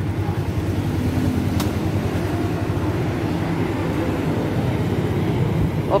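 Engines of a group of big motorcycles idling together: a low, steady rumble, with a single short click about a second and a half in.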